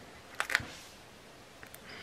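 A couple of quick, light clicks about half a second in, from hands handling things on a desk, then quiet room tone.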